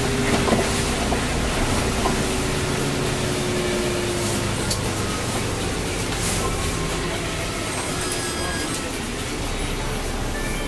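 Cabin noise of a city bus on the move: steady engine and road rumble with tyre hiss on a wet street, and a thin whine that slowly drops in pitch and fades out about halfway through.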